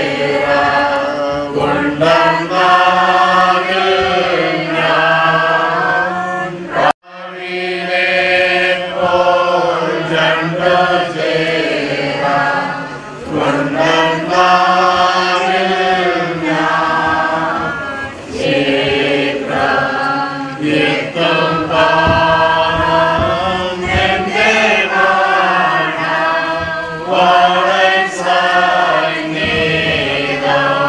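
A group of mourners singing a funeral hymn together, led by a man singing into a microphone. The singing is continuous except for a momentary dropout about seven seconds in.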